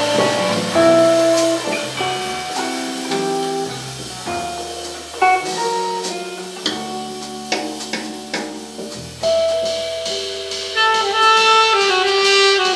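A live jazz quartet playing: a tenor saxophone holds long melody notes over hollow-body electric guitar, bass guitar and a drum kit, with sharp drum and cymbal accents now and then.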